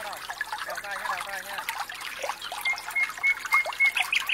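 Pool water splashing and trickling close by as a swimmer strokes toward the microphone, with children's voices in the background.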